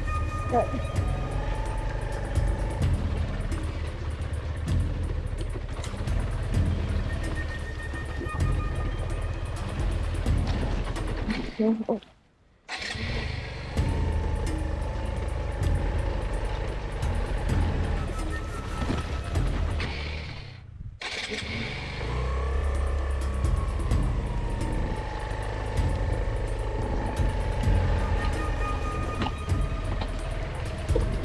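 Suzuki Van Van 125 single-cylinder four-stroke engine chugging at low revs through deep muddy ruts, heard close up from the bike, with background music over it. The sound cuts out briefly about twelve seconds in and dips again around twenty-one seconds.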